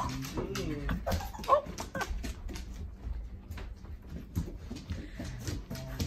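A Great Pyrenees running and slipping on a tile floor, its claws clicking and scrabbling in quick irregular taps. A woman laughs about a second in.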